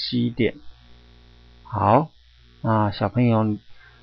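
A man's voice speaking in three short phrases over a steady low electrical mains hum.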